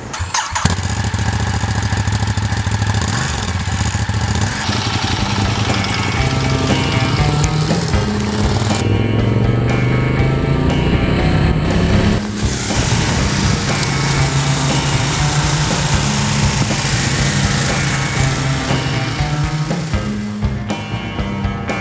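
Ducati Diavel's Testastretta 11° L-twin engine starting about half a second in, then running and revving as the bike rides off, the pitch rising several times as it accelerates. Music plays underneath.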